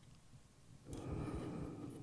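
Near silence, then about a second of faint soft rushing noise: a person drawing breath before speaking.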